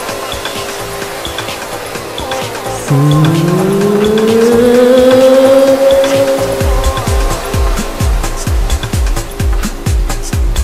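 Electronic dance music from a club DJ set: a rising, gliding tone enters about three seconds in and climbs for a few seconds over held synth notes. About six and a half seconds in, a steady kick-drum beat comes in, a little over two hits a second.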